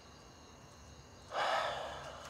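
A man's sudden heavy breath, a little over a second in, fading away over about half a second, as he begins to break down crying.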